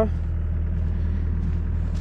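Diesel engine of a construction machine idling steadily, a low even drone.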